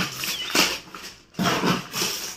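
Gift wrapping paper and newspaper rustling and crinkling in a few bursts as the paper is pulled back to unwrap a large gift box.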